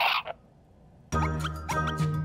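A brief cartoon sound effect, then a second of near silence. About a second in, bouncy children's background music starts, with a steady low bass and short plucked notes.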